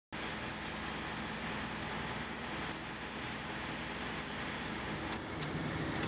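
Steady low machinery hum under a haze of noise, with faint scattered clicks and taps: the background of a truck and equipment repair shop.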